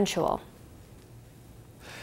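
The tail of a news narrator's spoken word, then a pause of faint, steady background noise. A soft intake of breath comes near the end, before the voice resumes.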